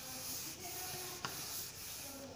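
Marker writing being wiped off a whiteboard by hand: a steady rubbing hiss, with one light tick a little over a second in.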